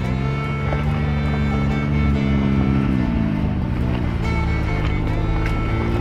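Can-Am Maverick X3 side-by-side's three-cylinder engine pulling up the trail: it climbs in pitch, holds, eases off about three seconds in, then climbs again near the end. Background music plays over it.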